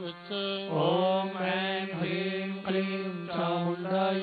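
A man's voice chanting a Hindu mantra in long, slowly gliding sung notes over a steady low drone.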